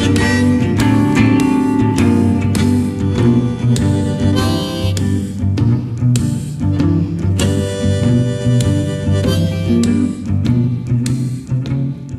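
Blues instrumental after the last sung line: harmonica played over electric guitar keeping a steady beat.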